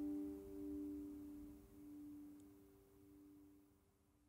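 Last chord on a steel-string acoustic guitar ringing out, its notes sustaining with a slight waver and slowly fading away.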